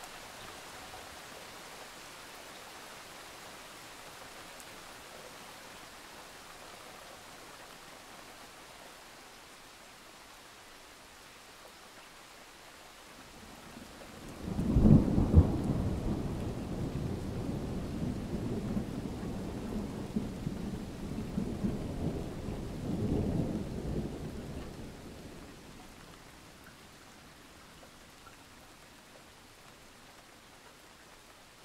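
Steady heavy rain, broken about halfway through by a sudden thunderclap, the loudest sound here, that rumbles on in several swells for about ten seconds before fading back under the rain.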